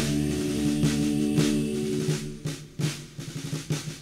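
Military-style snare drum roll and strikes in a country ballad arrangement, over a held chord that fades out about halfway through, leaving sparser drum strokes.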